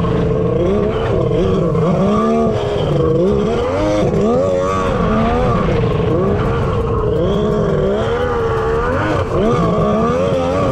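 Kawasaki jet ski's two-stroke engine running hard under way, its revs rising and falling again and again as the throttle is worked through turns, over the rush of water and spray against the hull.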